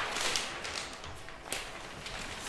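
Large sheets of brown kraft paper rustling and flapping as they are handled and laid out on a floor, with a sharp swish about one and a half seconds in.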